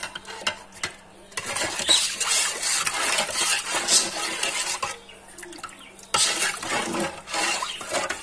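A metal spoon stirring water in an enamel pot with a peeled potato in it, scraping and clinking against the pot, in two spells: one from about a second and a half in, the other starting about six seconds in.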